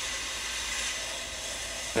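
Coney triple-jet butane cigar lighter burning with a steady hiss, its locked-on flame held against an aluminium can and cutting through the metal.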